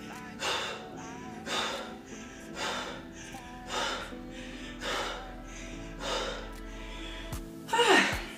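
Background music with a steady beat, over which a woman breathes out hard about once a second while throwing punches with dumbbells.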